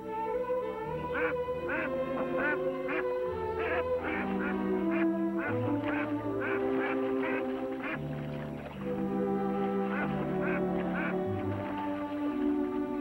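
A Canada goose honking over and over in short, repeated calls, over background music with long held notes.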